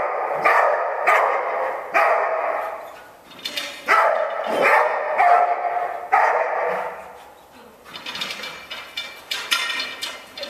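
A dog barking repeatedly, about nine barks in the first seven seconds, each one echoing around a large indoor arena. The barking is sparser and fainter near the end.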